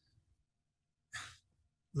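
Near silence, broken about a second in by one short audible breath from a man before he speaks.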